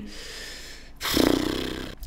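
A man breathes out through the nose, then gives a rough snort of a laugh lasting about a second, starting halfway through.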